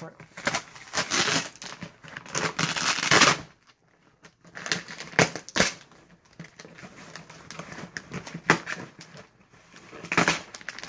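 Packing tape being peeled and torn off a cardboard shipping box, with crinkling of a plastic packing-slip pouch: long noisy tears in the first few seconds, then after a short break, scattered sharp crackles and clicks.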